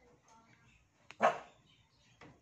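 A single short, loud animal call, like a bark, about a second in, over faint room noise.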